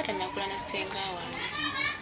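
Speech: people talking, with high-pitched children's voices among them.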